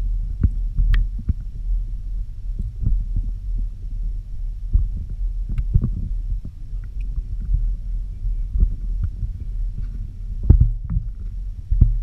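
Sound picked up by an underwater camera in a crowded trout raceway: a continuous low rumble of moving water with irregular knocks and bumps as fish brush against the camera housing. The loudest knock comes about ten and a half seconds in.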